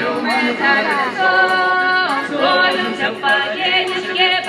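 Voices singing a Russian traditional folk song, with long held notes about a second in and sliding pitch around the middle.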